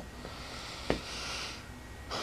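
Quiet pause: a single small click about a second in, then a short, soft breath close to the microphone.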